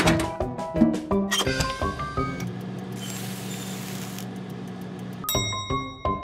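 Cartoon sound effects for a small toy oven: a steady low hum with a faint hiss for about three seconds, ended near the end by a bright ringing ding like an oven timer, with light background music around it.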